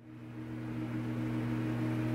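A steady low hum with a hiss over it, fading in over the first half second: the room tone of a large room, like the drone of a building's electrical or ventilation equipment.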